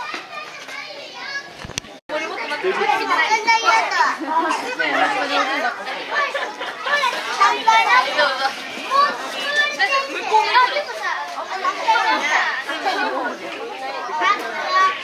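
Many children and adults chattering and calling out at once, with high children's voices prominent. There is a brief click and dropout about two seconds in, after which the crowd of voices is louder.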